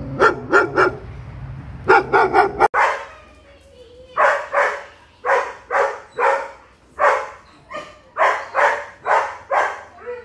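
German Shepherd barking repeatedly in short clusters. After a cut the barking carries on indoors as a steady series of about two barks a second. This is reactive barking at another dog.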